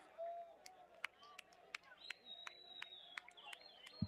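Near silence: faint distant voices with a few soft ticks, and a faint thin high tone partway through.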